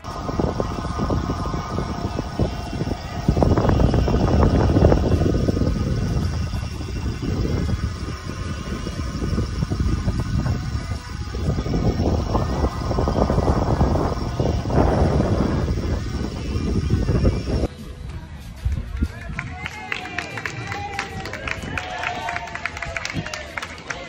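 Wind rushing and buffeting over the microphone of a camera on a moving road bike, loud and gusting. It cuts off suddenly about 18 seconds in and gives way to the chatter of a crowd.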